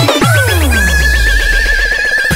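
Funkot electronic dance music at a break: the fast kick beat stops, and a falling synth sweep runs over a deep bass swell while a long wavering high tone is held.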